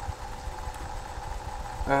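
Steady low hum with a faint constant tone, as from a room machine or the recording gear. Near the end a man starts a drawn-out "uh".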